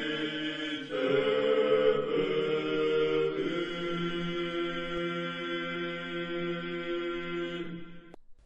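Orthodox church chant sung by a group of voices in long held chords during an Easter procession. The chord changes about a second in and again a little after three seconds, and the singing cuts off abruptly near the end.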